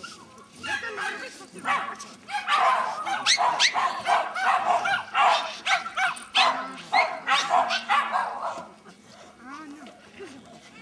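A dog barking excitedly in a fast, steady run of high barks, about three a second, for some six seconds from a couple of seconds in.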